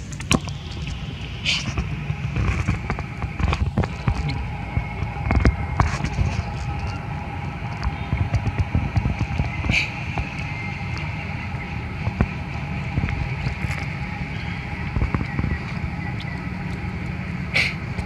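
Outdoor ambience dominated by a low wind rumble on the microphone, with a faint steady high hum and a few short, sharp high-pitched sounds spread through it.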